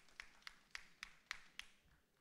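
Near silence broken by about six faint, sharp taps, roughly three a second, dying away near the end.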